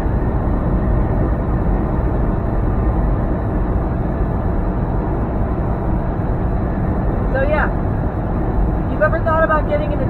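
Steady drone of a semi truck's engine and tyre noise heard inside the cab while cruising on the highway. A short voice sound comes about seven and a half seconds in, and brief speech again near the end.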